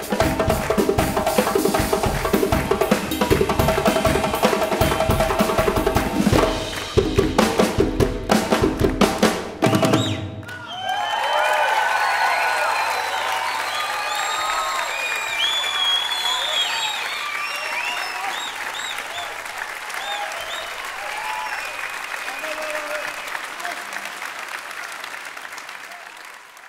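Drum kit and hand drums played together at full tilt, ending about ten seconds in with a run of heavy unison accents. Then the audience applauds and cheers, the applause slowly fading.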